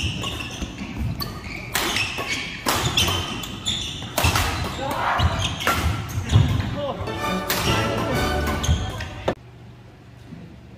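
Badminton doubles rally: rackets striking the shuttlecock in quick exchanges, with players' footwork on the wooden court floor and their voices. The sound drops away suddenly near the end.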